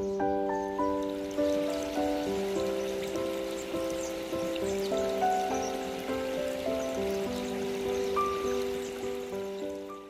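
Background music: a calm melody of struck notes, about two a second, each fading away, fading out at the end.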